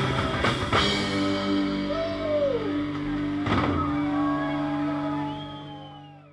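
A live rock band ends a song: drums and cymbals play fast until about a second in, then a held electric guitar chord rings on with sliding notes, and one more drum and cymbal hit comes about midway. The sound fades out near the end.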